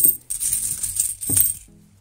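Loose 50p coins clinking and jingling against each other inside a cloth bag as a hand rummages through them. There are several sharp clinks, and the jingling stops about one and a half seconds in.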